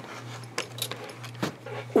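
A few light clicks and taps as a craft knife and a steel ruler are set down and shifted on a plastic cutting mat, over a steady low hum.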